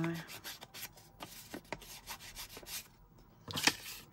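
Foam ink blending tool rubbed over paper in short, irregular strokes, with the rustle of paper being handled; a louder flurry of strokes comes near the end.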